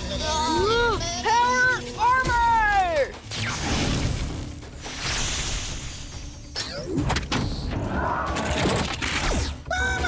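A cartoon voice singing loudly in swooping, arching notes for about three seconds. Then comes a long stretch of crashing, shattering sound effects, with a quick sweep about seven seconds in, over background music.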